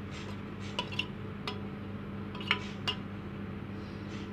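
A handful of light clinks from a steel bowl as chopped tomatoes are tipped out of it into a bowl of chopped vegetables, the loudest about two and a half seconds in, over a steady low hum.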